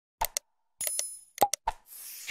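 Subscribe-button animation sound effects: a pair of sharp mouse clicks, a short bell ding, a few more clicks, then a whoosh starting near the end.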